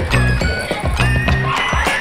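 Background pop music with a bass line and a steady beat.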